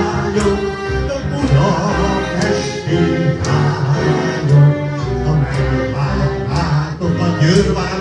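A man singing a Hungarian magyar nóta (folk-style popular song) into a microphone over electronic keyboard accompaniment with a steady beat, played through PA speakers.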